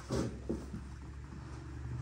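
Two short knocks followed by a few fainter bumps and rustles as a person settles onto a seat right beside the camera, over a steady low hum.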